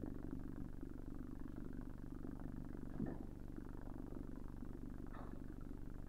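Steady low hum in a pause of a speaker's talk, with a faint short sound about three seconds in.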